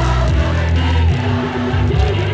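Gospel music: a group of voices singing together over a loud, held bass line.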